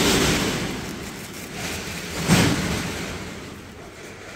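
Cloth rustling as a pair of white trousers is handled and spread out close to the microphone, with one sharper flap of the fabric a little over two seconds in, then dying away.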